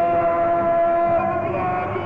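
Arena public-address sound during a hockey team's entrance show: long held pitched notes that shift slightly in pitch partway through, over the noise of the crowd.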